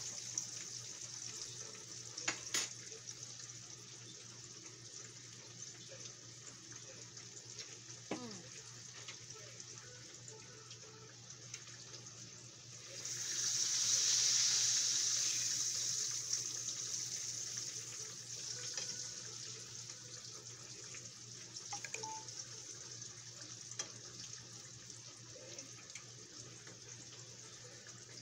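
Hot oil sizzling steadily under catfish and green tomato slices frying on the stove. About 13 seconds in the sizzle swells sharply, then fades over a few seconds as the tomato slices in the skillet are tended, with a few light clicks of utensils.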